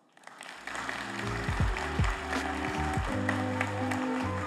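Audience applause starts just after the keynote ends, and walk-off music with a steady bass line fades in under it about half a second later.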